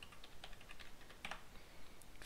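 Faint keystrokes on a computer keyboard: a run of light, quick clicks as digits are typed, one a little louder just past the middle.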